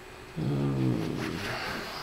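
A man's low sleepy groan, starting about half a second in and sinking slightly in pitch before trailing off.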